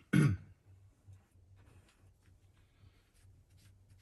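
A man clears his throat once, briefly, at the very start, with a falling pitch. After that there are only faint soft rustles and a few small clicks.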